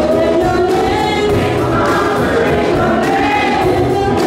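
Church choir singing a gospel song, with music accompanying the voices.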